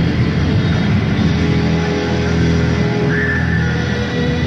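Live rock band playing a loud blues-rock jam: electric guitar over bass and drums, with a held guitar note starting about three seconds in.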